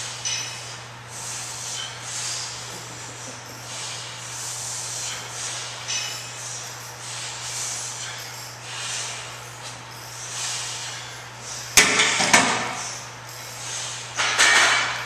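A lifter breathes in soft, regular swells during bench press reps. Near the end, the loaded barbell is racked onto the steel rack's hooks with two sharp metal clanks about half a second apart.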